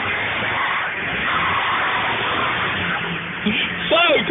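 Jeep Cherokee XJ engine running at low revs as the 4x4 crawls over wet rocks, under a steady hiss of rushing creek water.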